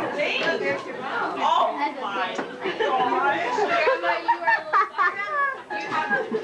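Chatter: several people talking over one another, with no other sound standing out.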